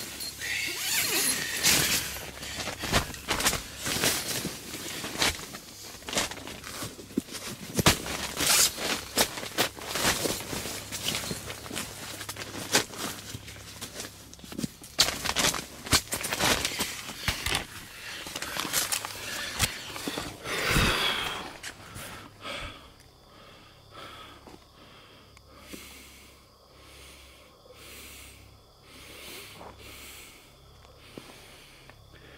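Footsteps crunching and rustling through the forest floor: dense, irregular crackles for most of the stretch, then quieter, evenly spaced steps about once a second near the end.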